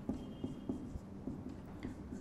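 Marker pen writing on a whiteboard: a run of short, faint strokes as letters are written, with a brief faint squeak near the start.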